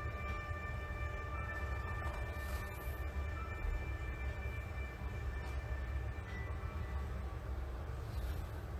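A steady low rumble with a few faint, long-held high tones above it.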